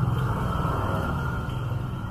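Low engine rumble of a vehicle passing by, loudest at the start and easing off.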